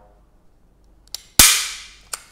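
Hand staple gun firing a staple into a styrofoam block: a faint click about a second in, then one sharp, loud snap that rings away over about half a second.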